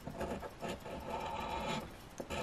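A coin scratching the latex coating off a paper scratch-off lottery ticket in quick, repeated scraping strokes.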